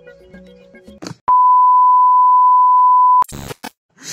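A single steady 1 kHz bleep tone, about two seconds long, starting just over a second in and cutting off abruptly. It is a censor bleep dubbed over the speech track.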